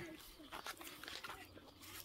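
Quiet, faint scrapes and small clicks of a knife peeling fruit by hand.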